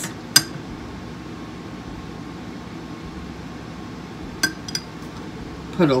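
A metal spoon clinking against a glass salsa jar: one sharp clink about half a second in, then two lighter clinks a little after four seconds.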